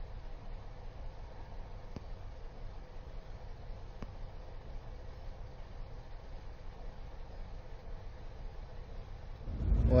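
Faint, steady open-air background noise, a low rumble with a light hiss. Two faint ticks come about two and four seconds in.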